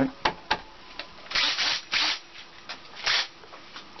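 Cordless drill with a twist bit run in a few short bursts, each lasting about half a second, after a couple of clicks as it is picked up.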